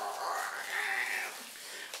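A dog whining: one long drawn-out call that rises and then falls in pitch, lasting about a second.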